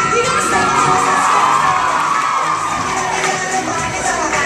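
Audience cheering and screaming, a dense mass of many high-pitched voices, with the show's music still faintly underneath.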